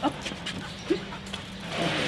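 Detector dog giving a couple of short whimpers while it searches on a leash, over a steady low hum.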